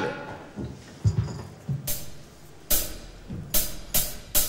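A drum kit opening a song with a sparse lead-in: a few soft bass-drum beats, then from about halfway louder, sharper hits coming roughly twice a second.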